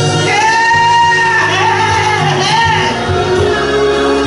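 Gospel music with live singing: a lead voice holds one long high note, then moves into a wavering run, over steady bass and keyboard accompaniment.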